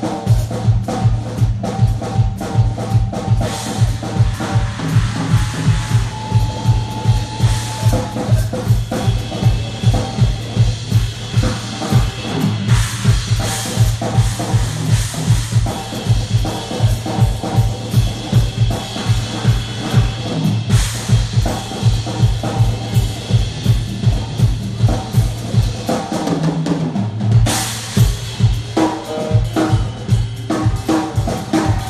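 Live blues-rock band playing an instrumental passage: electric guitars over a steady rock beat on a drum kit, with a strong, sustained bass line underneath.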